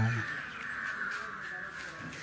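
A bird calling in the background, a steady, fairly high call that carries for about two seconds after a man's voice trails off at the start.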